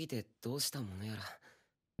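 Anime dialogue: a character's voice speaking a short line, quieter than the streamer's own voice, stopping about a second and a half in.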